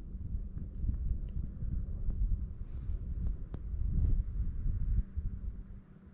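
Wind buffeting the action camera's microphone in gusts, a low rumble that swells and then drops away sharply about five seconds in.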